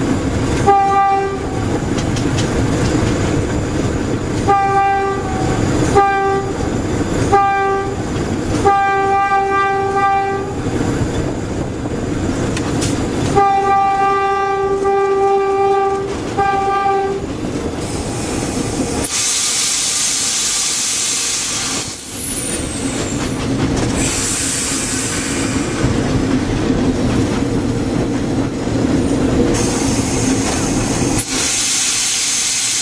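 GE U15C diesel-electric locomotive heard from its cab: the engine runs steadily while the horn sounds a string of short blasts and two long ones over the first seventeen seconds. Then a loud hiss comes in about nineteen seconds in and again around twenty-four, with a brief falling whistle between.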